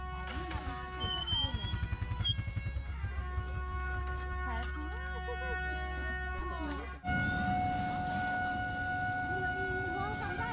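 A kèn wedding horn playing long held notes over people chattering, with a low motorbike engine hum underneath. The sound cuts off abruptly about seven seconds in, and louder held notes follow.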